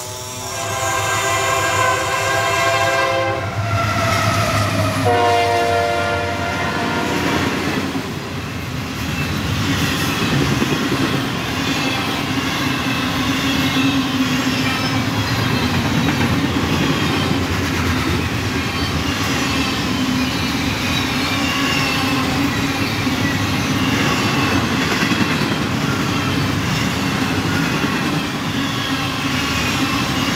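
Train horn blowing twice, a long blast of about three seconds and a shorter one about two seconds later, then the steady noise of a train passing for the rest of the time.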